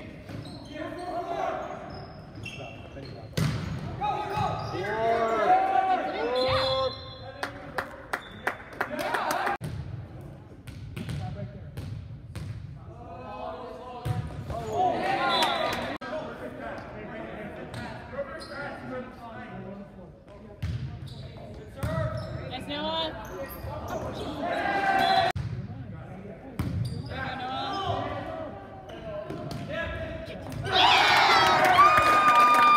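Volleyball rallies in an echoing gym: sharp slaps of the ball being struck by players, with a quick run of hits about seven to nine seconds in. Players' shouts and spectators' voices carry through the hall.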